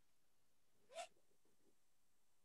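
Near silence on a video-call line, broken by one faint, brief sound about a second in.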